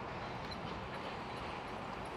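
Steady, low-level background noise between the narrator's sentences: an even hiss with a faint low hum and no distinct events.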